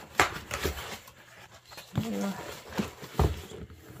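Cardboard retail box being opened by hand: a sharp snap as the lid flap is pulled up, then rustling and scraping of the cardboard and packaging, with a knock about three seconds in.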